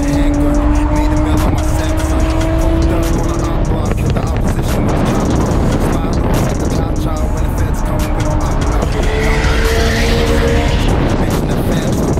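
A car driving with a steady low drone, its engine note rising slowly during the first few seconds and again near the end, with music playing over it.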